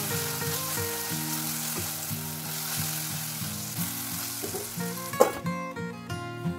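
Chopped carrot and green capsicum sizzling as they fry in a steel pot, stirred with a spatula. A little over five seconds in comes one sharp clank as the pot is covered, and the sizzle falls away.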